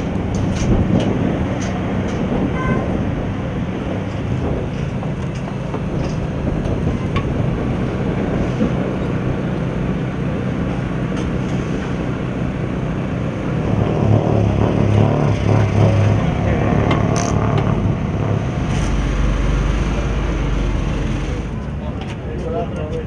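A car engine running steadily, with voices in the background and a few light clicks of tools. The engine gets louder for a couple of seconds past the middle.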